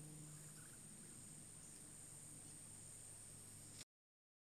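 Faint outdoor sound picked up by a trail camera's microphone: a steady high-pitched insect buzz over a low hum, cutting off suddenly near the end.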